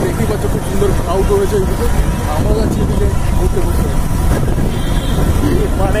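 A motorcycle's engine and road noise as it rides along, a steady low rumble, with a man's voice talking over it.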